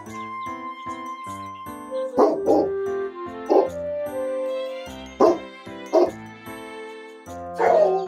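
Background music with steady notes, over which a dog barks about six times at irregular intervals.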